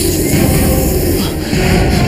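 Loud, dense dramatic background score with heavy low end, the kind laid under a tense supernatural scene.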